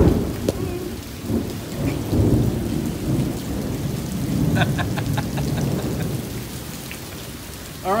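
Thunderstorm: rain falling steadily with a long, low roll of thunder, loudest at the start and rumbling on in swells as it slowly dies away.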